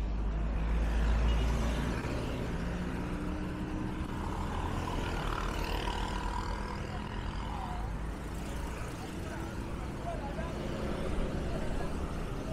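Motor traffic on a busy city road: engines and tyres of passing vehicles, with a heavy low rumble strongest in the first two seconds.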